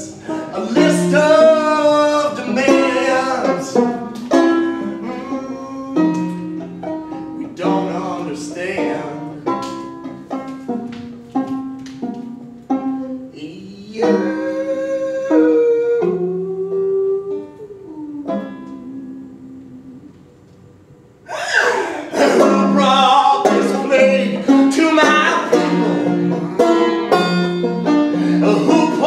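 Banjo played live, picking a melody of plucked notes. It thins out and falls quiet about two-thirds of the way through, then comes back loud and busy with fast picking.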